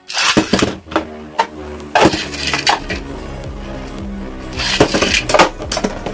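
Two Beyblade Burst tops are launched into a plastic stadium and spin, clacking sharply as they hit each other and the stadium wall, with a rapid flurry of hits near the end. Background music plays underneath.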